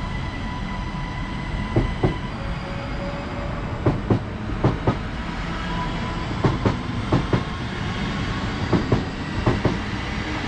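A Belgian (SNCB) passenger train rolling past. Its wheels clack over rail joints in quick pairs, about a pair every second or two, over a steady rumble and a faint steady whine.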